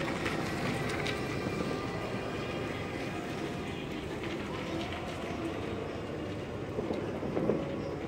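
Steady outdoor street background noise with a low hum and faint distant voices; no distinct event stands out.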